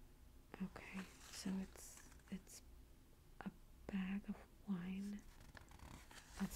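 A woman's soft, murmured voice in short broken fragments, too quiet to make out as words, with faint rustles of glossy magazine paper as the pages are handled.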